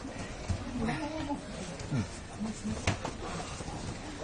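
Judo sparring on mats: a few sharp slaps or thuds, around the start and just before three seconds, over scuffling. Short low grunts from the people grappling come in between.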